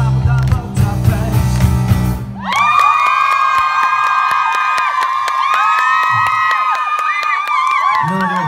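A live band with drums and bass guitar playing the final bars of a song, which stops about two seconds in. The audience then cheers with many high-pitched screams and whoops.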